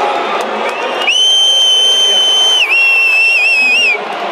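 Large arena crowd cheering. About a second in, a loud, shrill whistle from someone close by rises over it, holds steady for about a second and a half, then dips and wavers and cuts off near the end.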